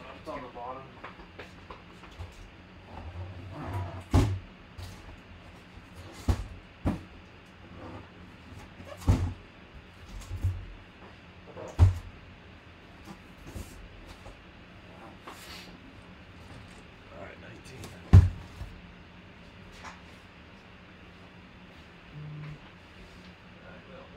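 A large cardboard box being handled: a series of sharp knocks and thumps at irregular intervals, about seven in all, as it is moved and turned.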